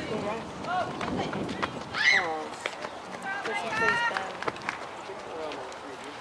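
Several voices shouting and cheering over one another, high-pitched calls rising and falling, with a few sharp clicks mixed in; the crowd's reaction to a ball put in play in a youth baseball game.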